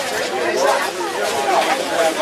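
Several people talking at once: casual conversation with overlapping voices, no single speaker clear.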